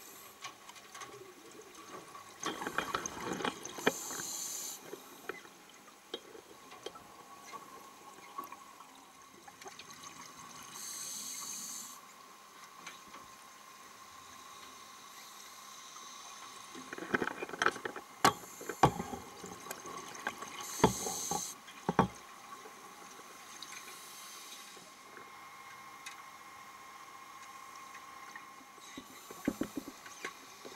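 Underwater sound as picked up by a camera in its housing: a diver's exhaled air bubbling out in bursts of about a second every several seconds, with scattered clicks and knocks, most of them between about 17 and 22 seconds in.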